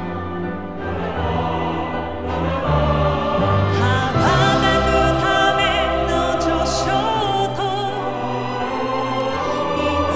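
Symphony orchestra playing a slow ballad accompaniment, swelling about three seconds in. A solo female voice comes in singing the Japanese lyric over it about four seconds in.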